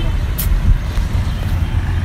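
Steady low outdoor rumble picked up by a handheld phone's microphone, with a faint short click about half a second in.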